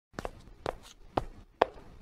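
Cartoon footstep sound effect: four sharp, evenly spaced steps, about two a second, with some steps doubled.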